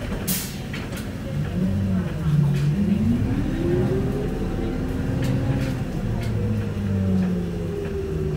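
Inside an Isuzu Erga 2DG-LV290N2 city bus pulling away, with its four-cylinder turbo diesel under load. A short hiss of air comes right at the start. Then a whine rises over about three seconds and slowly eases off again.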